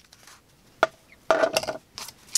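Short handling sounds of a folding knife and a cardboard strip being set down on a wooden board: a sharp tap a little under a second in, then a louder brief clatter just past halfway.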